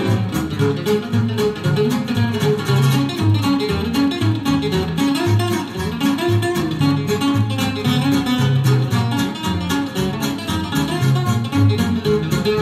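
Gypsy swing recording with an acoustic lead guitar soloing over a steady beat of strummed rhythm guitar and bass.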